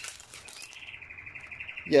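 A small bird trilling in the background: one rapid, high, even trill that starts about half a second in and runs for about a second and a half.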